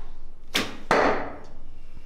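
A recurve bow shot: a sharp release about half a second in, then a louder sharp strike about a third of a second later as the arrow hits the target, fading quickly.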